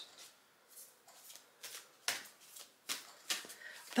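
A deck of oracle cards being shuffled by hand: soft, irregular flicks and slaps of card on card, the sharpest about two and three seconds in.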